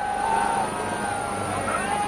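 Helicopter running, a steady noise with a thin high whine, with voices of a crowd calling out over it.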